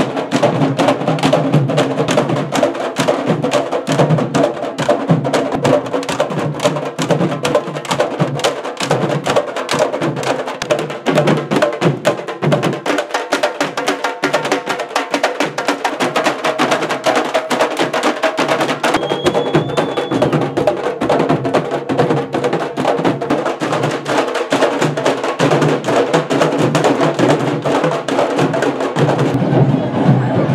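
A candombe drum ensemble (tambores) playing a fast, dense, driving rhythm of hand and stick strikes on the drumheads.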